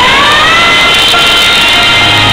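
Live rock band music with the bass and drums dropped out, leaving one loud held note that dips and then slides upward in pitch.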